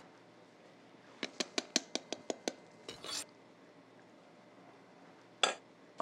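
A utensil clinking against a glass mixing bowl of dry flour and cornmeal: a quick run of about nine light taps over about a second, then a brief scrape and a single clink near the end.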